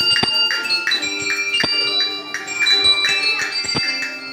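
A children's set of colour-coded handbells played one note at a time by different ringers, picking out a melody. Each bell gives a sharp strike and a ringing tone at its own pitch, with about three notes a second.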